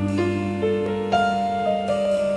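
Piano playing a slow instrumental passage, single notes changing about every half second over a held low note.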